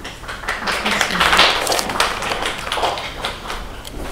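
A small group of people clapping, building to a peak about a second in and dying away near the end.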